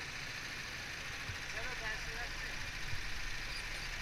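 Several rental go-kart engines idling steadily while the karts stand lined up.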